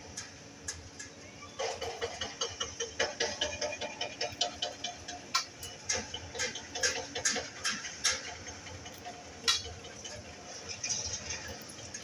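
A kitchen knife cutting the tops off roasted okra pods over a steel plate: a steady run of light clicks and taps as the blade meets the metal, with a couple of louder taps.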